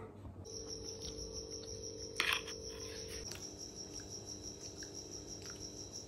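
A cricket trilling steadily at a high pitch, with a faint low hum underneath. A short knock comes about two seconds in.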